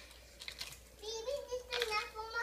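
A small child's high-pitched vocalizing, gliding up and down in pitch, starting about a second in, with a few light clicks of toys being handled on the floor.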